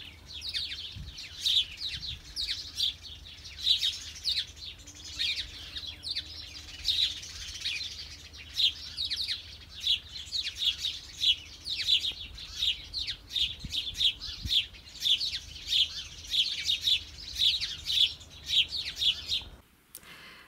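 Songbirds singing: a continuous run of short, high chirps, several a second.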